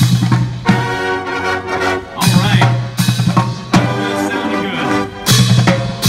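Marching band playing while marching: trumpets, saxophones and mellophones in chords over low sousaphone notes and a drumline's snare and bass drums. The loud low brass notes come back every couple of seconds.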